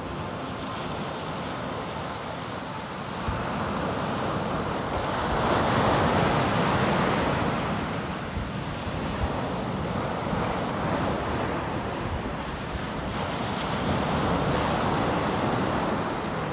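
Sea surf breaking and washing up a sandy beach in slow surges, louder about five seconds in and again near the end, with wind buffeting the microphone.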